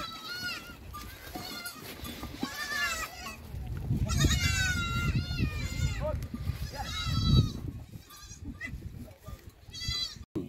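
Several goats bleating in turn, a series of quavering, high-pitched calls some of which overlap, from adults and kids in a herd. A low rumbling noise runs under the calls in the middle, and the loudest moment comes there.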